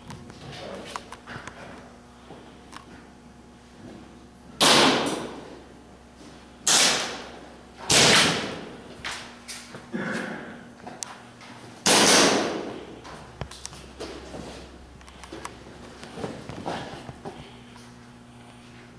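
Four loud, sharp shots from airsoft guns, each ringing out in the big hall for about a second. The first comes about four and a half seconds in, the next two follow at roughly two-second spacing, and the last comes near twelve seconds. Softer knocks fall between them.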